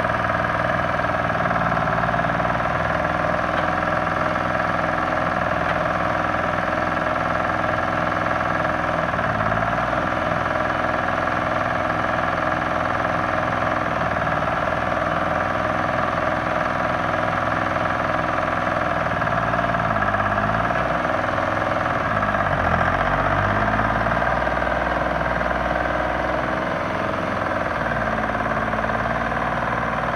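Timberjack 225 skidder's diesel engine idling steadily, its speed sagging briefly and recovering about nine seconds in and twice more past the twenty-second mark.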